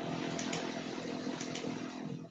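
Engine noise of a passing motor vehicle, swelling up, holding for about two seconds, then fading, picked up through a video-call microphone.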